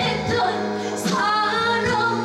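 A woman singing live into a handheld microphone over musical accompaniment, a new sung phrase starting about halfway through.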